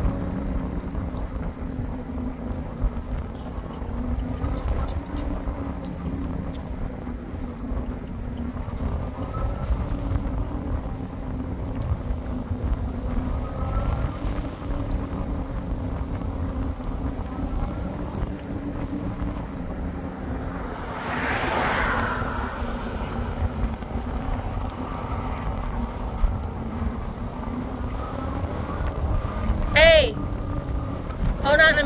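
Wind and road noise from riding a bicycle on a paved road: a steady low rumble with a steady hum underneath. A little past two-thirds in, a broad swell of noise rises and fades over about a second.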